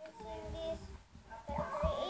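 A young child singing and vocalising in drawn-out, wordless tones, with a couple of low thumps in the second half.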